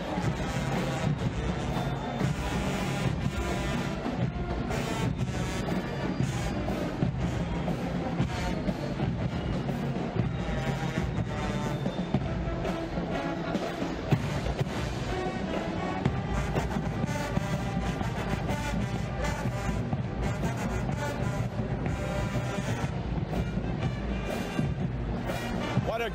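High school marching band playing in the street: a full brass horn section of sousaphones, trombones and trumpets, punctuated by sharp drum hits.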